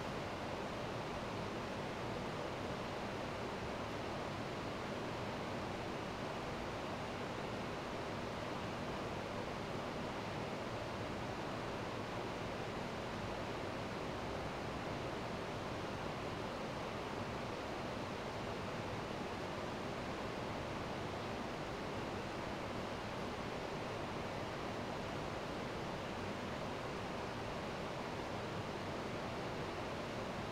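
A steady, even hiss of room noise with no other sound.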